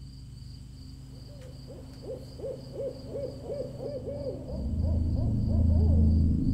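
An owl hooting in a quick run of short calls, about two or three a second, each rising and falling in pitch. A low rumbling drone swells up near the end and grows louder than the calls.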